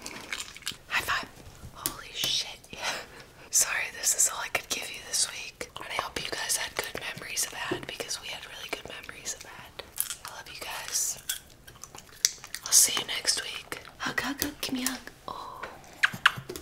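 Close-miked Italian greyhounds chewing popcorn: many sharp crunches and wet mouth sounds, under a woman's whispering.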